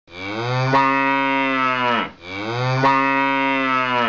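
A cow mooing twice: two long, loud calls of about two seconds each, the second starting about two seconds in, each dropping away at the end.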